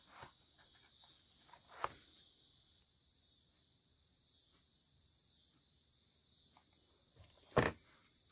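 Quiet handling of a cardboard knife box: a small tap about two seconds in, then a single sharp knock near the end as the box is set down on a work mat, over a faint steady high hiss.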